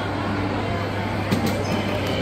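Indoor shopping-mall ambience: a steady low hum under distant crowd chatter, with a few light clicks a little past halfway.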